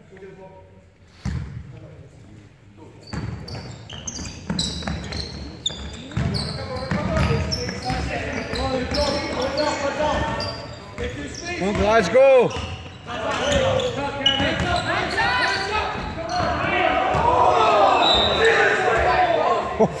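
Basketball game in a large echoing sports hall: the ball bouncing on the court, sneakers squeaking, and players and spectators shouting, the voices growing louder in the second half.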